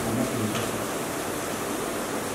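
A steady hiss of room background noise during a pause in a man's speech.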